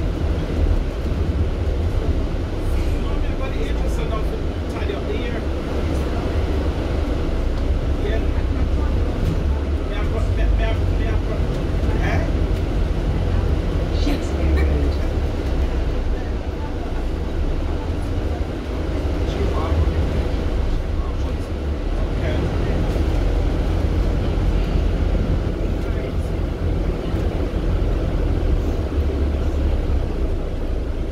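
Interior noise from the upper deck of a moving double-decker bus: a steady low engine rumble with road noise.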